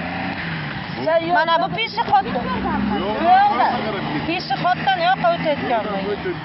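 People talking outdoors, several phrases of speech, over a steady low hum.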